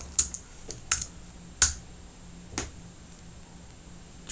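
Computer keyboard keystrokes as a terminal command is typed and entered: about five separate key clicks spread over the first few seconds, the sharpest about a second and a half in.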